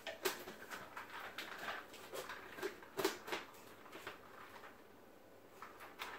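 Light plastic clicks and knocks of a Nutribullet blender cup being handled and its blade top twisted on. The clicks thin out after about four seconds.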